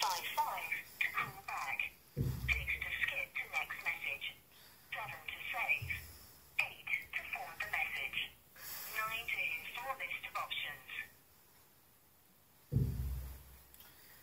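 A voice playing through a small phone loudspeaker, thin and narrow like a call recording, in short phrases that stop a few seconds before the end. Two dull low thumps come about two seconds in and near the end.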